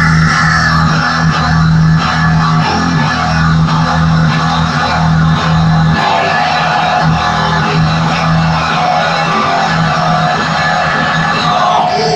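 Electric guitar playing a rock riff with no vocals, a steady low note under a rhythmic pattern that changes about halfway through.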